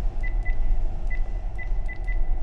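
Furuno FM-8800S VHF-DSC radio giving short, high key-press beeps, about five of them at uneven spacing, as digits of a ship ID are keyed in. A steady low hum runs underneath.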